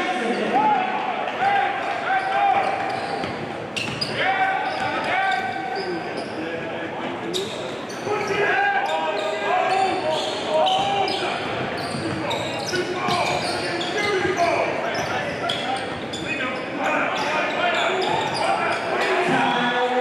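Basketball dribbled on a hardwood court in a large gym, with sharp bounces among players and spectators calling out.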